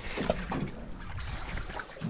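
Water lapping against a boat's hull at sea, with a steady low rumble of wind and sea noise.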